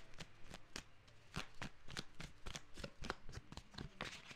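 A tarot deck being shuffled and handled by hand: a quiet, irregular run of quick card flicks and taps.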